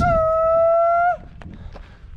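A man's drawn-out shout on one held pitch, lasting a little over a second, then cut off, followed by a single faint click.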